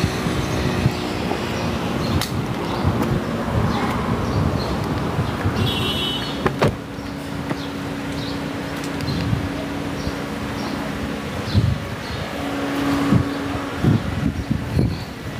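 Steady low rumble of a car and the road around it, with a steady hum joining about six seconds in. A sharp click partway through and a few knocks near the end come from the sedan's doors being handled as someone gets in.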